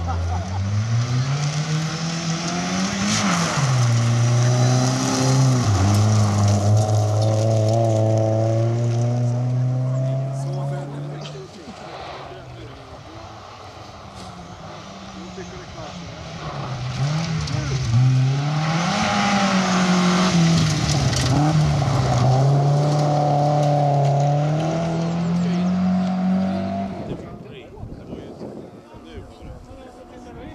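Two gravel rally cars passing one after the other, each engine revving hard and climbing in pitch, then dropping back sharply at each gear change, with the hiss of gravel spraying from the tyres. The second car is a Volvo saloon.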